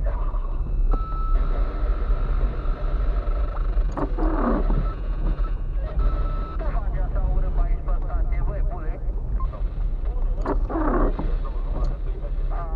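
Car interior while driving slowly over a rough, potholed dirt road: a steady low rumble of engine and road noise, with indistinct voices over it.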